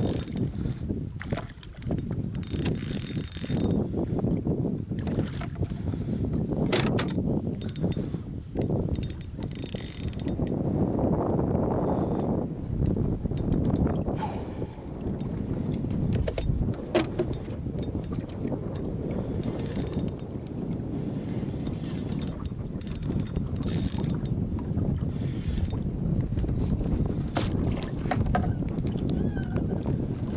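Shimano Stradic spinning reel working during a fight with a redfish: cranking and clicking, with several short bursts of drag, over steady wind noise on the microphone.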